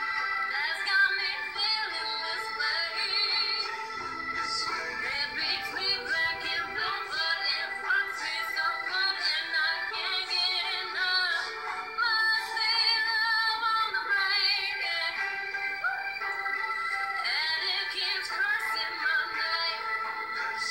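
A woman singing a cover song with vibrato over a musical backing, the low end thin, as from playback through a screen's speaker.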